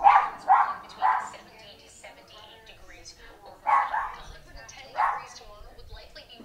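A dog barking: three quick barks in the first second, then two more at about four and five seconds.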